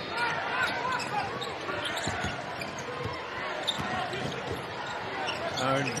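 Basketball being dribbled on a hardwood arena court, a few bounces standing out about two seconds in, under steady crowd chatter and voices in the hall.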